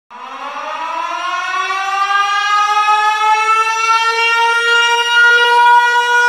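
A siren winding up, its wail rising steadily in pitch for about four seconds and then holding one loud, steady tone.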